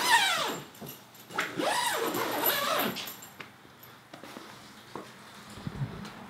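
Two high-pitched, wavering whines. The first trails off about half a second in, and the second lasts about a second and a half. A few faint clicks follow.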